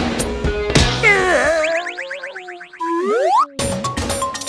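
Cartoon sound effects over background music. After a second of music with drum hits come wavering, gliding whistle-like tones that dip and warble, then a rising slide-whistle-like glide that cuts off sharply, a comic effect to go with a character being knocked out.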